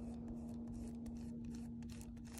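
A rubber eraser rubbed back and forth over tracing paper, making faint, repeated scratchy strokes over a steady low hum.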